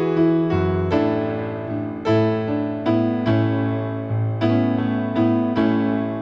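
Piano playing a slow, bluesy intro in a lilting six-eight feel: chords over low bass notes, each struck and left to ring before the next, a new chord every second or so.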